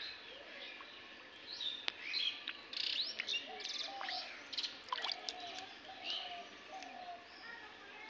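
Small birds chirping, a busy run of short chirps and quick rising calls mostly in the middle of the stretch, over a faint outdoor background.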